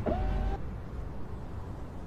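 A low steady rumble from a car. Near the start, a short pitched tone rises and then holds for about half a second.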